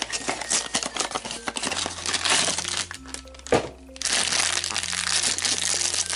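Blind-box packaging being opened by hand: cardboard flaps and then a foil bag crinkling and rustling, thickest over the last two seconds. Background music with steady low notes plays underneath.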